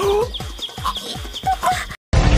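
A fast run of short, deep falling beats, about six or seven a second, with brief high blips over them: an edited-in comic sound effect or music sting. It cuts off abruptly at the end.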